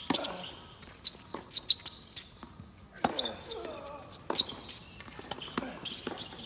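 Tennis ball bouncing on a hard court and being tapped with rackets between points: a string of irregular, sharp knocks, with a short burst of voice about three seconds in.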